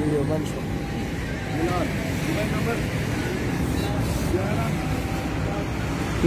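Steady low vehicle rumble by the roadside, with men's voices talking faintly underneath.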